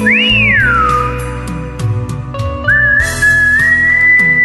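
A whistled melody over a karaoke backing track with bass and light percussion: a quick whistle that rises and falls at the start, then a long held whistled note from about three seconds in.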